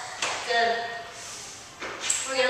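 A woman's voice, brief, with a short sharp noise about a quarter second in and another near the end.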